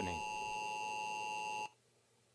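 Emergency Alert System attention signal from a TV: a steady two-tone electronic tone that cuts off abruptly about three-quarters of the way through, announcing an emergency broadcast.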